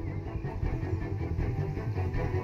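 A steady, dense low rumble in a TV serial's soundtrack, most of its weight in the bass.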